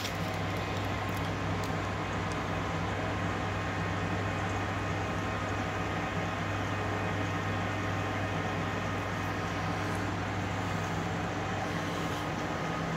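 Ajax AJL480 large manual lathe running with its spindle at 420 RPM and the carriage on power feed: a steady hum from the headstock gearing and drive, with a low drone and a few steady tones over it.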